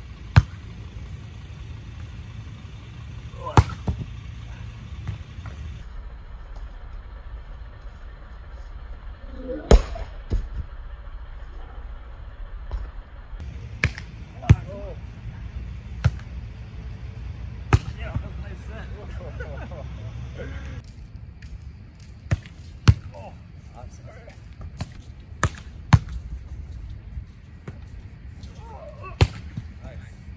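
A volleyball being hit back and forth: sharp, single smacks of hands and forearms on the ball, a dozen or so at irregular intervals of one to several seconds, over a steady low rumble.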